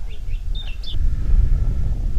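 Small birds chirping a few short notes in the first second, over a steady low rumble.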